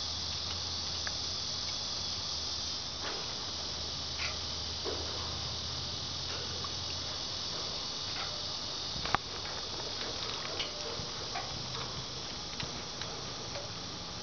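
A steady high-pitched hiss, with scattered faint clicks and short chirps and one sharp click about nine seconds in.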